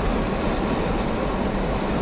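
Steady road noise of a moving car heard from inside its cabin: a continuous low rumble of engine and tyres on the road.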